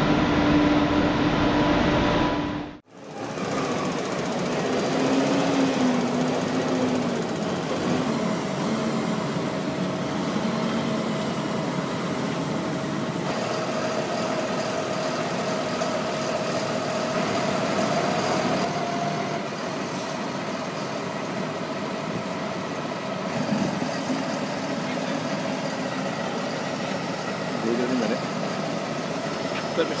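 Tractor engine running steadily while a raised tipping trailer empties its bulk load, a continuous mechanical running noise with a steady hum. A brief drop about three seconds in marks a change from an earlier steady hum with a couple of fixed tones.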